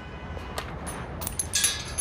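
Street background with a low steady rumble, broken by scattered light clicks and a short bright metallic jingle about a second and a half in.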